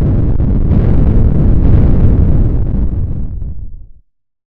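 Explosion sound effect: a loud blast with a deep rumble that holds for about two seconds, then fades away and is gone by the end.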